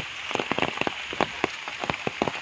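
Steady rain falling on grass, puddles and foliage: an even hiss with many irregular, sharp drops striking close by.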